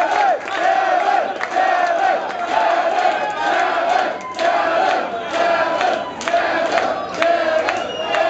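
Concert crowd chanting together in a club, many voices repeating the same short rising-and-falling shout over and over at a steady pace.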